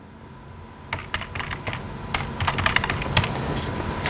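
Computer keyboard being typed on: a quick, uneven run of key clicks that starts about a second in and keeps going.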